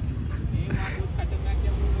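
A steady low rumble with faint, indistinct voices of people in the background.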